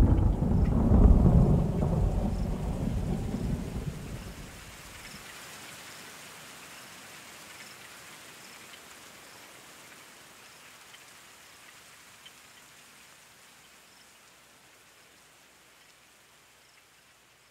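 Recorded thunderstorm: a rumble of thunder that dies away over the first few seconds, then faint rain that fades out to near silence near the end.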